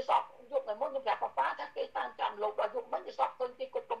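A woman's voice talking quickly and without pause, heard through a phone's speaker on a video call.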